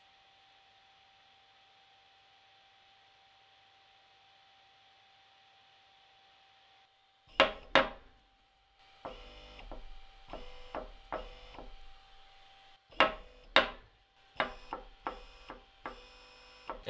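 Near silence with a faint steady tone for about seven seconds. Then an unloaded AC servo motor is run in short bursts up to 3000 RPM. Each burst is marked by a pair of sharp, loud sounds about half a second apart, and between them there are stretches of steady whine that switch on and off.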